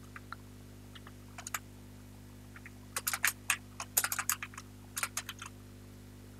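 Computer keyboard being typed on: a few scattered keystrokes, then a quicker run of key clicks from about halfway through.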